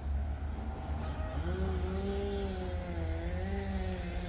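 A low steady rumble, joined about a second and a half in by a droning hum whose pitch wavers gently up and down.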